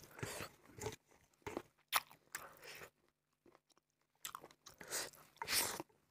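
Close-miked chewing of a mouthful of rice and fatty pork curry eaten by hand, in irregular bursts, with a pause of about a second just after the halfway point before the chewing resumes louder.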